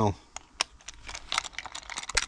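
Scattered short clicks and taps from handling a Master Lock key-safe box, its compartment shut with a car key inside.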